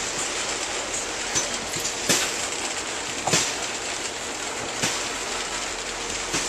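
Loaded coal hopper cars rolling past on the rails: a steady rumble of steel wheels on track, broken by a few sharp clacks at uneven intervals, the loudest about two and three seconds in.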